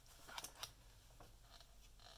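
Faint handling of a folded scrapbooking-paper letter as it is opened out, with a couple of soft paper crinkles in the first second.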